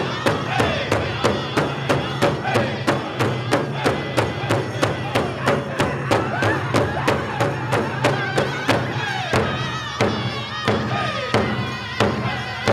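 Powwow drum group: several men strike a large shared hide drum in unison, about four strokes a second, while men and women sing a Cree song over it. About nine seconds in, the drumbeat slows to about two strokes a second as the singing continues.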